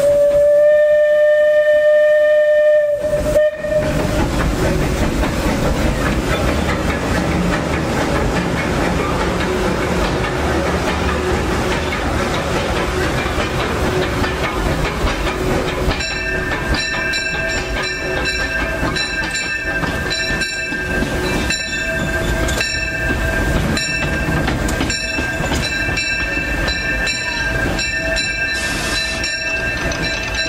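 The C.K. Holliday steam locomotive's whistle sounds one blast of about three seconds, which cuts off sharply. The locomotive then runs on with a steady rumble and clatter on the track. About halfway through, a set of steady high tones and regular clicks joins in.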